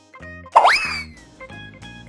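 Bouncy children's background music of short, evenly stepping notes. About half a second in, a loud cartoon 'boing' sound effect sweeps sharply up in pitch, then slides gently back down over about half a second.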